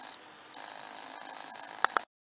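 Steady background hiss of the recording, with faint steady high whines, dipping briefly soon after the start; a short click near the end, then the sound cuts off.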